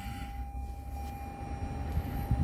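A single steady electronic tone, held at one mid-high pitch without a break, over a low rumble.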